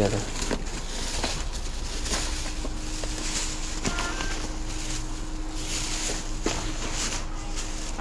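Footsteps on a wooden deck and plastic grocery bags rustling as they are carried, with scattered knocks. A faint steady hum comes in about two seconds in.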